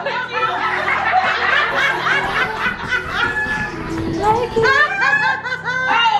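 Women laughing and giggling loudly over a song playing in the room.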